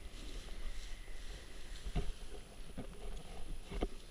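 Wind rumbling on the microphone over the rustle of a parachute canopy's nylon being gathered up by hand, with a couple of short knocks about halfway through and near the end.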